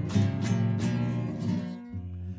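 Acoustic guitar strumming chords in a steady rhythm, with bass notes under the strums, accompanying a ranchera song.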